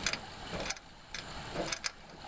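A handful of short, sharp clicks at uneven intervals from a hand socket ratchet being handled at a mower deck spindle, with a close pair of clicks near the end.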